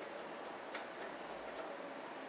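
Faint light clicks of a screwdriver working the screws of a TiVo Series 2 recorder's metal case, with one sharper click just under a second in, over a steady hiss.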